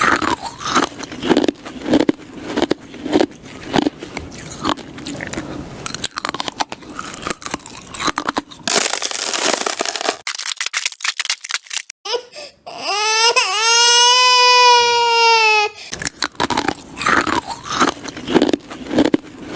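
Ice cubes being crunched, bite after bite, in quick irregular crunches. The crunching breaks off for a hiss about nine seconds in and a long, high wailing cry from about thirteen to sixteen seconds, then the crunching starts again.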